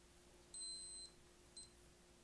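Metene TD-4116 blood glucose meter beeping as it switches on with a test strip inserted: one high beep of about half a second, then a second, very short beep.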